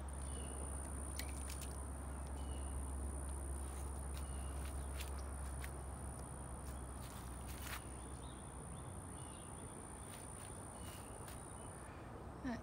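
Quiet outdoor ambience: a low rumble, a thin steady high-pitched whine that stops just before the end, a few brief chirps and scattered soft clicks.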